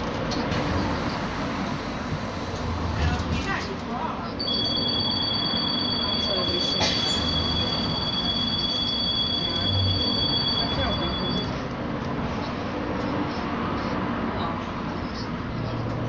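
Road traffic: cars driving past on a multi-lane road, with a steady two-note high whine from about four seconds in until near the twelve-second mark.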